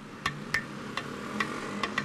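Sharp ticking clicks, about two or three a second and slightly irregular, over a low steady hum.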